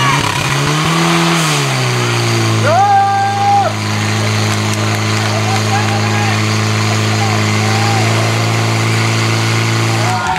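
Portable fire pump's engine revving up, then running steadily at full throttle as it drives water through the hose lines to the nozzles; its note drops near the end.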